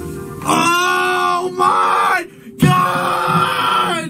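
People yelling and screaming in excitement, in two long drawn-out shouts, over background music.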